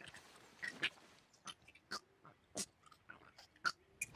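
Quiet, scattered little animal noises from a cartoon winged lemur, short sniffs and chewing clicks, about half a dozen spread over a few seconds.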